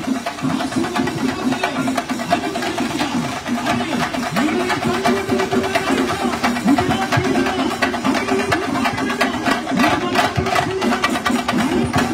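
A group of chenda drums, the wooden cylindrical Kerala drum, beaten with sticks while marching, in a fast, unbroken stream of strokes.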